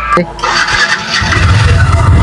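Yamaha motorcycle being started: a click, then the engine starts about a second in and runs loudly.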